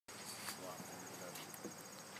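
Insects chirping in a high, steady, rapidly pulsing trill.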